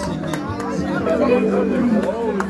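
Several people talking over one another, with music playing underneath.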